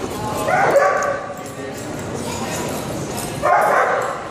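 Dogs barking and yipping in rough play: two loud bouts, one about half a second in and one near the end.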